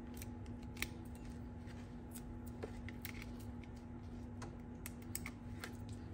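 Faint small clicks and taps of foam adhesive dimensionals being peeled from their backing sheet and pressed onto cardstock, with the card being handled, over a steady low hum.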